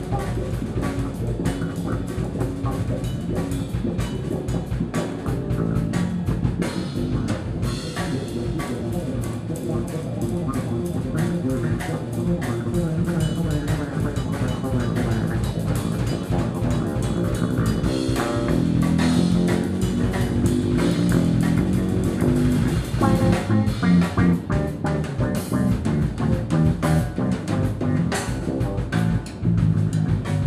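Electric bass guitar and an acoustic drum kit playing live together as a duo, the bass playing a busy, fast-moving line over steady drum strokes and cymbals.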